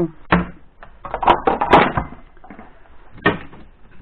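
The plastic thermostat cover of an Indesit SB 1670 refrigerator being pulled off: a sharp plastic knock just after the start, a cluster of clattering and rattling in the middle, and one more knock a little past three seconds in.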